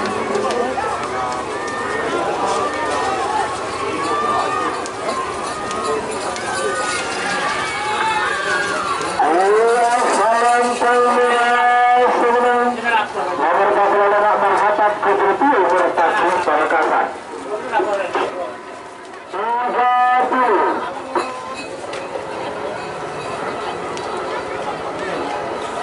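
Crowd shouting and cheering at a bull race, joined by long held calls that glide up in pitch at the start. The calls are loudest from about ten to seventeen seconds in and come once more, briefly, around twenty seconds.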